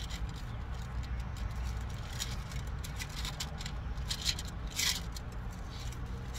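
Thin Bible pages being leafed through, with short papery rustles and swishes now and then, the longest a little before the end. Under it a steady low hum.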